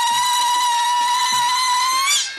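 A woman ululating: a zaghrouta, the Egyptian trill of joy at a wedding. It is one long, high, loud call held on a steady pitch, with soft low drum beats underneath.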